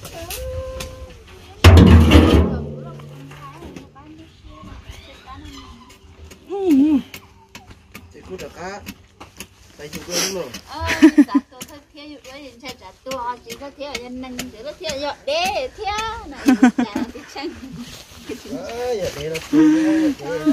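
A steel oil drum gives one loud hollow metal clang about two seconds in and rings on for a couple of seconds as it fades, among people talking and laughing.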